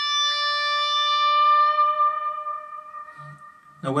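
Electric guitar playing a single picked note at the 15th fret of the B string, slowly bent up a half step and left to ring, fading away over the last couple of seconds.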